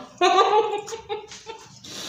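A person's muffled, high-pitched wordless vocal sound through a mouthful of chewed candy bar, in a few short pulses in the first second, then a breathy exhale near the end.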